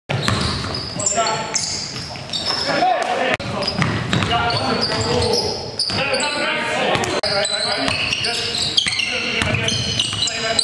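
A basketball bouncing on a gym's hardwood floor during play, with several sharp knocks, under indistinct players' voices.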